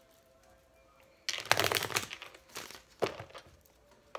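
A tarot deck being shuffled by hand: a rapid run of card flicks and slaps lasting about a second and a half, then a shorter burst about three seconds in.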